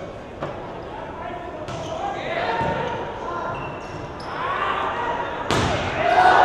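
Indistinct voices echoing in a large indoor sports hall, with a single knock about half a second in. Louder hall noise comes in near the end.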